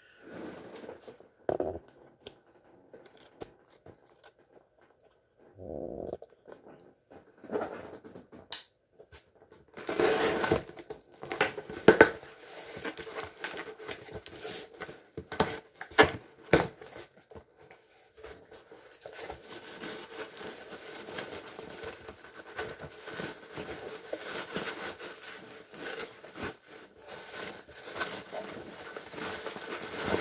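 A cardboard shipping box being opened with a folding knife: the blade cuts through the packing tape, then the tape tears and the cardboard flaps scrape and rustle. It is quiet apart from a few scattered clicks at first, and the handling noise becomes busy from about ten seconds in.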